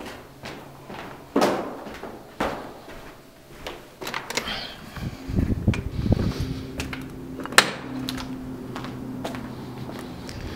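Footsteps and knocks in a stairwell, then the building's glass entrance door being opened, with a rumbling stretch about halfway and a single sharp click a little later. A steady low hum runs under the second half.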